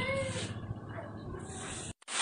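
A short, high-pitched wavering cry that fades out about half a second in, over a low steady rumble; the sound cuts off abruptly just before the end.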